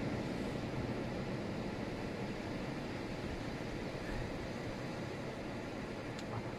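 Steady, even rushing noise with a low rumble underneath: wind and distant surf on an open beach.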